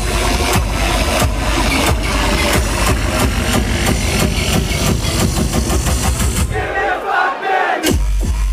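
Industrial hardcore played loud over a club sound system, a heavy distorted kick drum pounding under the track, with a crowd audible. About six and a half seconds in, the kick and bass drop out for a short break, then the kick comes back right at the end.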